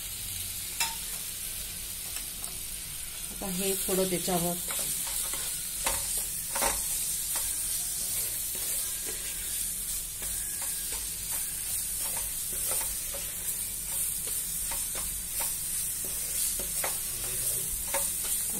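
A wooden spatula stirs and scrapes semolina against a nonstick pan, with many small scraping clicks, over a steady sizzle of rava roasting in ghee on a low flame.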